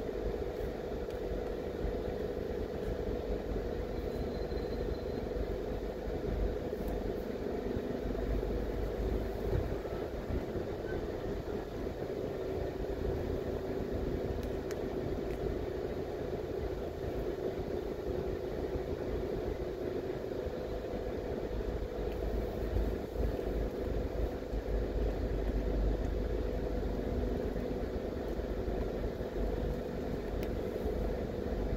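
A car's engine and tyres at low driving speed: a steady low rumble with a faint hum.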